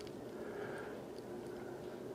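Quiet room tone with a faint steady hum.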